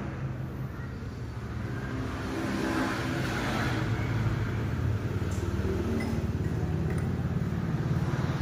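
A motor running steadily with a low, even hum; no shots are fired.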